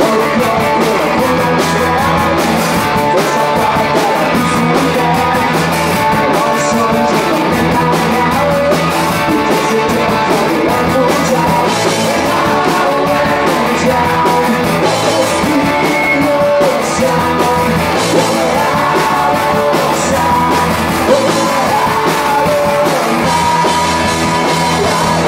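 A live punk rock band playing loud and without a break: distorted electric guitars, bass and drum kit, with a man singing the lead vocal.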